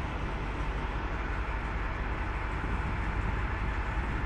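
Steady low rumble of vehicle engines, with no distinct events.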